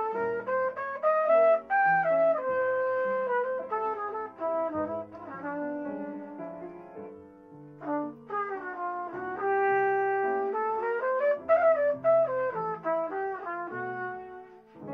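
Trumpet playing a jazz melody over chords from a Kawai upright piano. The trumpet breaks off briefly a little past the middle, then holds one long note before moving on.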